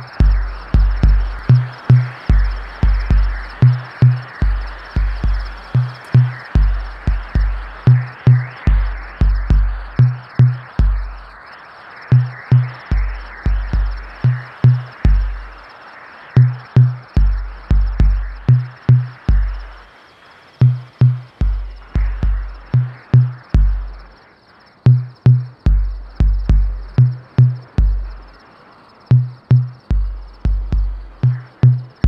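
Experimental electronic music: deep bass notes pulse in short runs of three or four, switching between two low pitches with brief gaps between runs. Above them sits a dense crackling noise texture that thins out about twenty seconds in.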